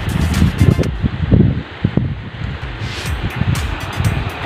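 Wind buffeting the microphone in gusts, over background music.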